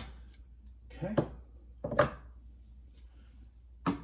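Two sharp knocks of a metal 58 mm bottomless portafilter being handled and brought up into the group head of a CASABREWS 4700 Gense espresso machine, one at the very start and one just before the end. A short spoken "okay" falls between them.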